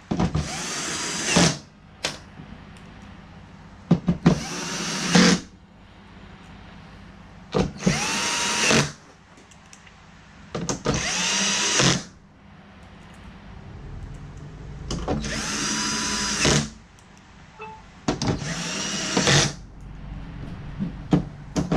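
Electric screwdriver driving screws into a TV's plastic back cover. It makes six short runs of about a second each, and each starts with a rising whine as the motor spins up.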